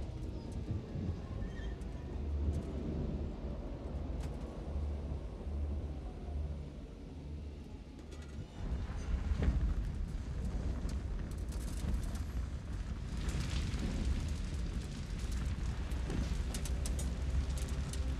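Wrecked train after a crash: a deep low rumble throughout, with hissing steam, crackling fire and scattered metallic clicks and creaks. It dips and then swells back up about eight and a half seconds in.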